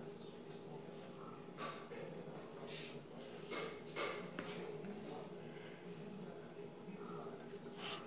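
Quiet room with a few faint, short rustles and soft scrapes, loosest around the middle.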